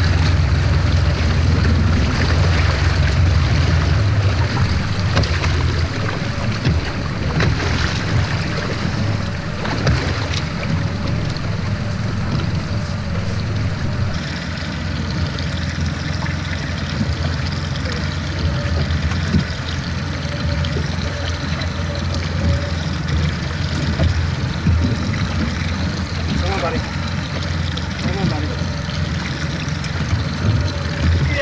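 Boat's outboard engine idling with a steady low rumble, under wind buffeting the microphone and water washing along the hull.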